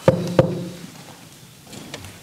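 Two knocks on a table, about a third of a second apart, each ringing briefly: the signal knock given to invite a spirit to knock back. A faint click follows near the end.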